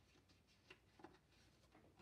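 Near silence: room tone, with two faint light taps about three-quarters of a second and a second in as paper recipe cards are handled.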